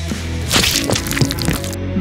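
Sharp cracking sounds, a loud one about half a second in and a few lighter ones after it, over background music.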